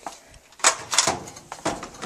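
A clothes dryer door being opened and handled: a few sharp clunks and knocks, the loudest about half a second and a second in.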